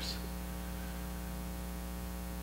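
Steady electrical mains hum, a low buzz with a row of higher overtones over a faint hiss.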